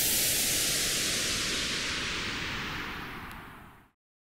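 A long hissing whoosh sound effect with a faint tone sliding slowly downward beneath it. It fades out gradually, then cuts off suddenly just before the end.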